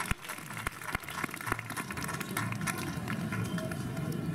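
A few sharp knocks in the first second and a half, then a low murmur of voices with scattered small clicks.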